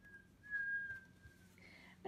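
A person softly whistling one held note, lasting about a second and a half and wavering slightly.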